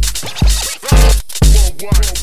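Live-coded electronic dance music from TidalCycles. A heavy, distorted kick drum hits about twice a second under fast hi-hats and gliding, scratch-like chirps, over held low notes.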